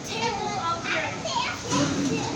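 Children's voices: kids talking and playing.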